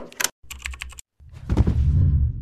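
Intro sound effects: sharp clicks, then a quick run of about half a dozen clicks like keyboard typing, then, a little over a second in, a swelling low whoosh.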